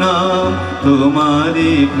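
A Bengali devotional song: a voice sings long held notes that bend slightly, over a steady musical accompaniment.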